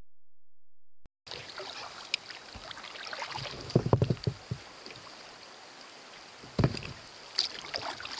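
Kayak paddle strokes dipping and splashing in calm water, in a cluster about four seconds in and again twice near the end, over a steady high-pitched hiss.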